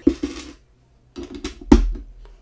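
Small plastic colour snaps clattering as a hand picks them from a loose pile, then a few clicks and a sharp snap near the end as they are pressed onto the plastic Intelino train track.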